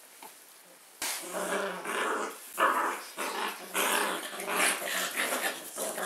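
Bearded Collie puppies growling as they play-fight, starting suddenly about a second in and going on in a run of loud calls with short breaks.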